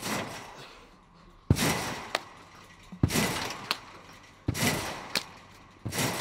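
Five bounces on an Acon rectangular trampoline, about a second and a half apart: each landing on the mat is a sharp thud, followed by a fading rustle from the bed and springs and a small click.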